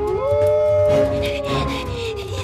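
A timberwolf, a wolf made of wood, howling: one long howl that rises quickly and then slowly sinks, over background music.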